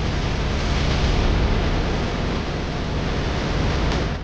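Steady rushing noise with a deep rumble underneath and no distinct tones.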